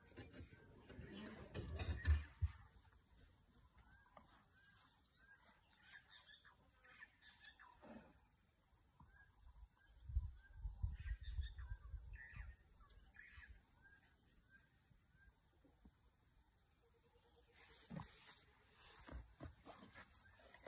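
A bird calling a steady series of short chirps, about two a second, that stop about three-quarters of the way through. Louder low rumbling sounds come about two seconds in and again around ten to twelve seconds in.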